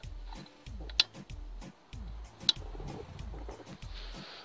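Two sharp clicks about a second and a half apart, over faint ticking handling noise, as the cable plugs and connectors of a small car-audio amplifier rig are handled.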